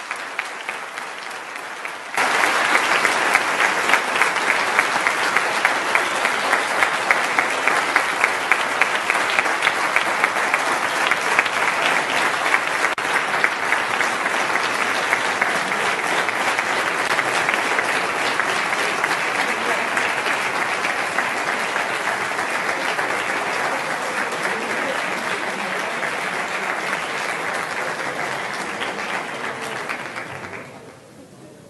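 A large hall of delegates applauding at length: many hands clapping together, softer for the first couple of seconds, then swelling sharply and holding, and easing slightly toward the end.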